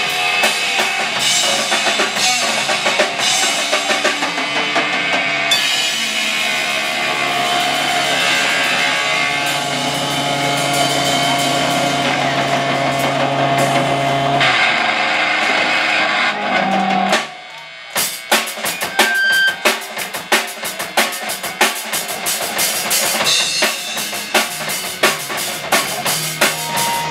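Live hardcore punk band playing loud: distorted electric guitar, bass guitar and drum kit. About two-thirds of the way through the held guitar sound cuts off suddenly, and after a brief drop the drum kit carries on with sharp, fast hits.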